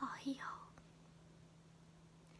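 A woman whispering briefly, then quiet room tone with a faint steady low hum.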